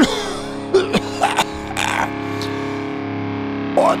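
Song intro on distorted electric guitar holding a sustained chord, broken by several sharp hits in the first half; the singing comes in at the very end.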